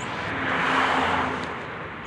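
A passing vehicle, its noise swelling to a peak about a second in and then fading.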